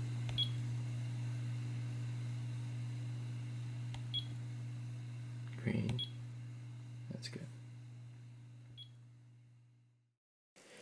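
SkyRC T6755 charger's touchscreen key beeps as its buttons are tapped: four short high beeps spread over several seconds. Underneath runs a steady low hum that fades out near the end.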